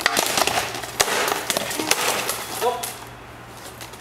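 Sparring sword striking a wooden shield in a rapid flurry of sharp knocks, several a second, that dies away about three seconds in.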